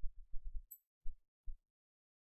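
A handful of dull, low thumps, about five in two seconds, with short gaps between them.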